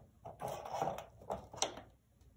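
Plastic tomato container being nosed and pushed about by a cat working treats out of it: a scraping rustle about half a second in, then two sharp plastic knocks.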